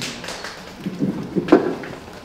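A few soft knocks in a quiet hall over low room noise, the sharpest about one and a half seconds in.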